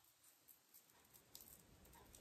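Near silence: room tone, with a few faint rustles and ticks from crinoline braid and thread being handled.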